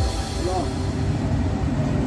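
Metro train running through a river tunnel, a steady low rumble and hiss of wheels on rail heard from inside the cab.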